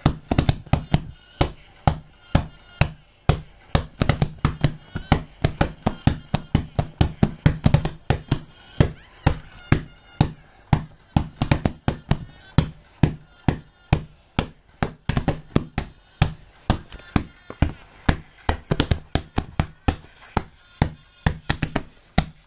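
A hand tapping and slapping on a padded leather surface close to the microphone in a quick, steady beat, about four knocks a second, keeping time with music heard only on headphones.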